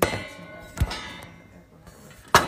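Two knocks on the metal bars of a horse stall: a clang with a brief ringing at the very start, then a sharp thud about a second in.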